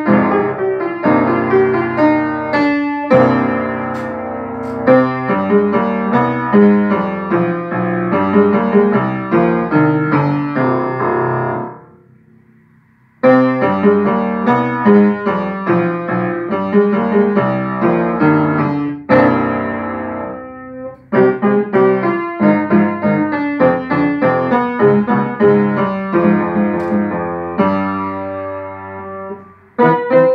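Yamaha upright piano played solo, a steady stream of notes that breaks off for about a second near the middle, then resumes.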